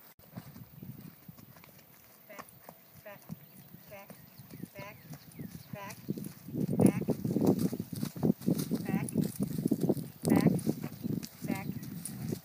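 A horse's hooves on the dirt of a round pen as it walks on a lead rope, the footfalls growing louder about six seconds in as it comes closer.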